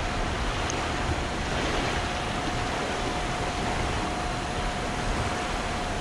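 Fast-flowing river water rushing through whitewater below a dam, a steady rush; the river is running high and fast after heavy rain. A faint steady tone runs under the rush.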